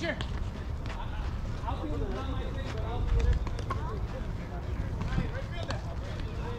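Faint, indistinct voices of people talking over a steady low rumble.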